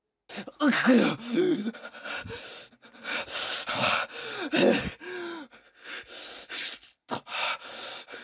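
A person laughing hard in several breathy, gasping bursts, with short pauses and sharp in-breaths between them.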